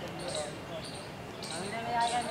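Faint, indistinct background voices of people talking, with short high-pitched calls recurring every half second or so.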